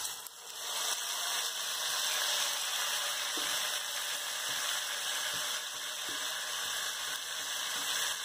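Seasoned chicken pieces sizzling as they drop into a hot pot of melted lard and caramelised sugar. The sizzle builds over the first second, then holds steady, with a few faint knocks of the spatula against the bowl and pot.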